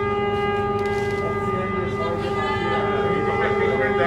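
Conch shells (shankha) blown in one long, steady note that wavers slightly, over crowd voices.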